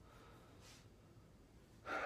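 Near silence: faint room tone with one soft breath about two-thirds of a second in, and a voice just beginning at the very end.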